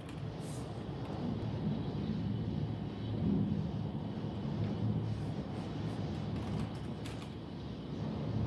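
Heavy rain and wind heard from indoors behind a window pane: a steady low rumble that swells a little about three seconds in, with a few faint taps of drops.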